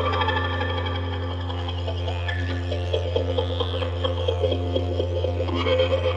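Didjeridu holding a steady low drone, with higher sliding tones from a second instrument weaving above it.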